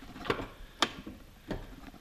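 Three short, sharp clicks from the door latches of a 2013 Chevrolet Silverado pickup as its doors are opened, the loudest about a second in.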